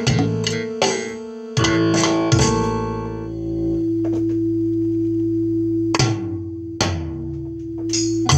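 Musical notes played on a keyboard instrument. Several notes are struck in the first two seconds, then a chord is held for several seconds over a low bass note, with fresh notes struck at about six and seven seconds.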